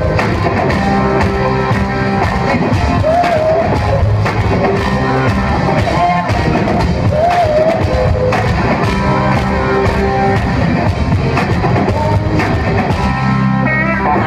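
A live band playing a rock song: strummed acoustic guitar over a steady drum beat, with a woman singing lead.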